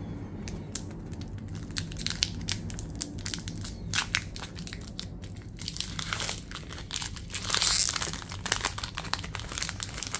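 Foil wrapper of a Pokémon booster pack crinkling in the hands and being torn open, with many sharp crackles. The loudest rip comes about seven and a half seconds in.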